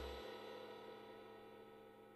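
The final chord of a ska-punk band recording ringing out, distorted guitar and cymbal decaying steadily and fading away; the lowest bass notes drop out about a quarter second in.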